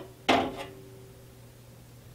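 A single metallic clink of steel tongs against the tempered knife blades and the toaster-oven tray as the blades are lifted out, ringing briefly and fading over about a second. A low steady hum runs underneath.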